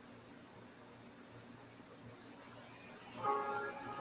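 Near silence for about three seconds, then background music comes back in as a held chord of steady tones.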